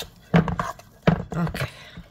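Hand working a crumbly cheese dough in a stainless steel bowl, with two brief knocks against the bowl, about a third of a second in and again about a second in.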